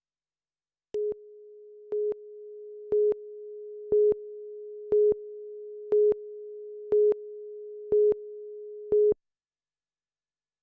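Countdown-clock tone on a television news tape: a steady single-pitched tone that starts about a second in, with a louder beep on every second, nine beeps in all, and cuts off right after the last one.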